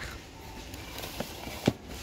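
Low steady background hum of a shop with a few light taps or clicks, the sharpest near the end.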